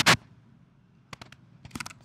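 Two sharp knocks right at the start, then a few faint clicks a second or so later, during a pause in the talk while the slides are being advanced.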